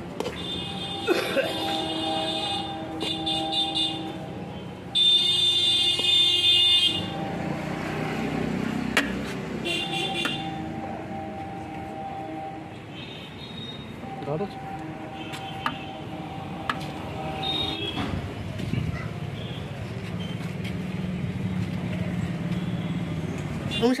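Vehicle horns sounding several times in long, steady blasts over street noise, the loudest about five seconds in.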